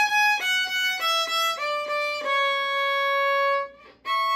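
Solo violin playing a short descending run of bowed notes, then one long held note that stops about three and a half seconds in.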